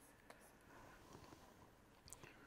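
Near silence, with a few faint ticks of a stylus on a writing tablet as a word is underlined.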